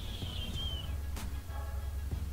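Steady low hum. A thin high whistling tone slides slightly down and fades out within the first second, and there is a faint click about a second in.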